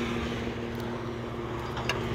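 Steady mechanical hum held at a constant pitch, with one faint click near the end.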